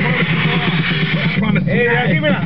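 Car driving along a rough dirt track, its engine and road noise heard from inside the cabin, with people's voices over it in the second half.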